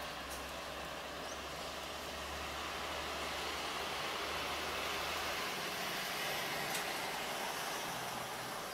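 Electric suburban train running away along the track, heard as a steady low rumble over a noise haze; the rumble drops away about five and a half seconds in.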